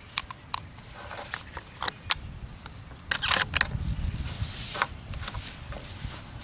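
Handling noise from a bolt-action rifle being readied to fire: scattered small clicks, then a quick cluster of sharper metallic clacks a little past halfway as the action is worked, followed by low rustling as the shooter settles in. No shot is fired.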